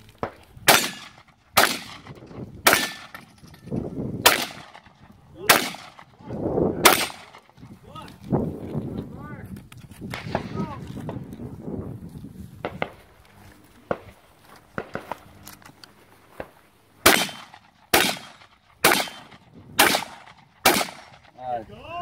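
Shotgun firing at steel targets: six shots roughly a second apart, a pause, then five quicker shots near the end.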